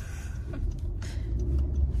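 Car cabin noise heard from the back seat of a moving car: a steady low engine and road rumble that grows slightly louder, with a faint hum and a short hiss about halfway.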